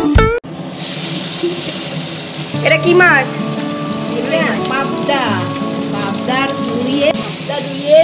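Hot oil sizzling steadily in a wok as a piece of food fries, the hiss getting brighter near the end, with voices talking over it. Guitar music cuts off just at the start.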